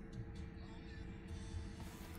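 Faint steady hum inside a car cabin, with a few low steady tones held throughout.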